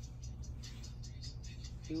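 Soft whispering of a short phrase, with no voiced sound, over a low steady hum, with faint music in the background.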